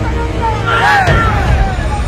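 A man's voice over dramatic background music with a steady low drone.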